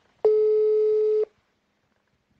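Telephone line tone: one steady beep of a single pitch, about a second long, heard over the phone line just before the call is answered.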